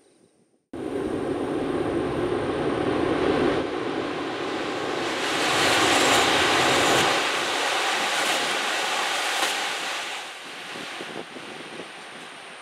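E6-series Tohoku Shinkansen train passing at speed: a loud rush of wheel and air noise that cuts in suddenly about a second in, swells to its peak around the middle, then fades away near the end.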